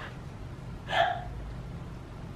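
A single short wordless vocal sound from a person, about a second in, over a low steady room hum.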